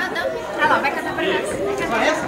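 Overlapping chatter of a crowd of adults and children talking at once.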